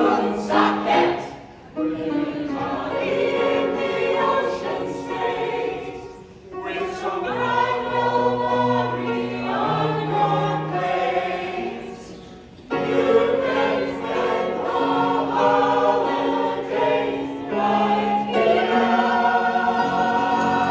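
Large mixed choir of men and women singing a Christmas song, in sung phrases with short breaks about two, six and twelve seconds in.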